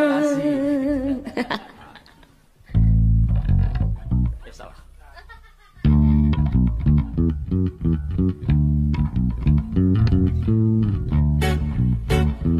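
A female singer's held note with vibrato fades out, then after a short near-pause a band with bass guitar and guitar starts playing, drops back briefly, and comes in fully about halfway through.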